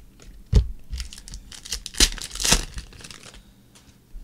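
Football trading cards being handled and shuffled by hand: a few sharp taps, the loudest about half a second and two seconds in, and a short scraping rustle of card stock a little after two seconds.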